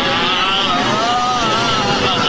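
A long, strained shout from a male voice, its pitch wavering up and down, over a loud steady rushing noise. It is an animated character's power-up yell with an energy-aura sound effect.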